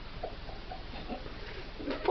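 Hamster's claws pattering on the floor of a bathtub as it scurries: a faint run of light, quick ticks, mostly in the first second.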